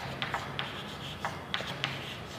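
Chalk writing on a blackboard: a run of short taps and scratches as the chalk strokes letters, about six in two seconds.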